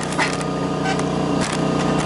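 A machine running with a steady hum, with a few short clicks and knocks from handling.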